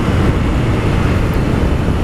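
Honda CB 300 motorcycle's single-cylinder engine running as it is ridden along a street, mixed with steady wind rush on the helmet camera's microphone.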